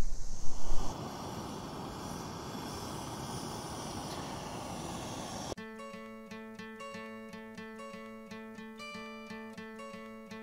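A loud uneven noise drops after about a second to a steady hiss, then acoustic guitar music starts suddenly about halfway through, strummed with a steady beat.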